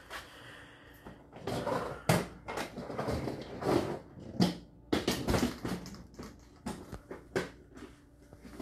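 Handling noise: a scattered string of short knocks, clicks and rustles as a small handheld ghost-hunting device (an Ovilus 5) is handled and set down on a concrete floor.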